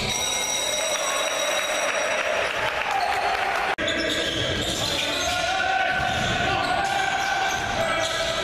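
Live basketball game sound in a gym: the ball bouncing on the court amid voices and shouts from players and crowd. The sound drops out for an instant just before halfway.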